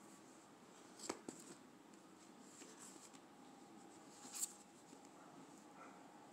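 Near silence: room tone, broken by a sharp click about a second in, a smaller one just after, and a louder click at about four and a half seconds.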